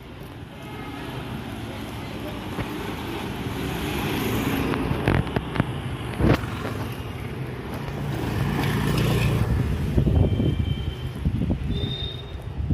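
Street noise with a small motor vehicle, such as a scooter or motorbike, passing close: its engine grows louder over several seconds, peaks near the end and fades. A few sharp knocks come about five to six seconds in.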